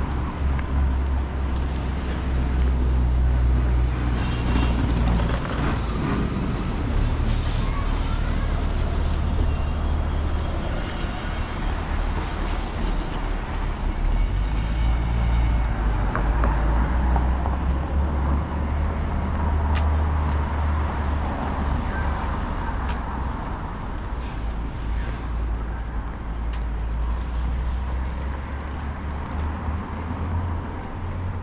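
City road traffic, cars passing on the street beside the pavement, with a steady low rumble and a few short clicks.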